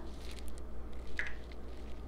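Faint handling sounds as fragrance oil is tipped from a small plastic cup into melted soy wax in a metal pouring pot: a few light ticks, then one brief soft pour or drip about a second in, over a low steady hum.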